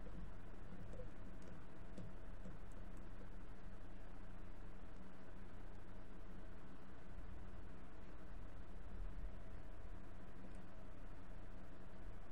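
Steady low electrical hum and hiss, with a few faint clicks.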